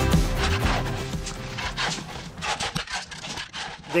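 Background music fading out over the first couple of seconds, giving way to irregular scraping and clinking of shovels working through decorative river rock.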